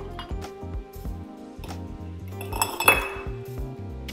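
Metal tongs clicking in an ice bucket, then a large ice cube dropped into a rocks glass with one loud clink about three seconds in. Background music plays throughout.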